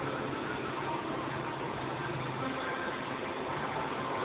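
Handheld hair dryer running steadily, a constant blowing hiss with a low motor hum.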